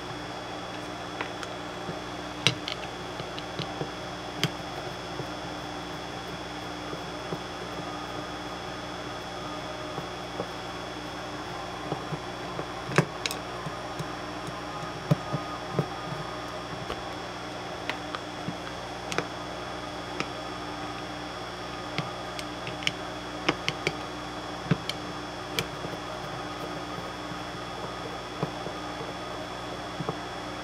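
Scattered small clicks and taps of a screwdriver and screws against an e-bike controller's circuit board and aluminium heatsink as it is unscrewed and taken apart, over a steady background hum.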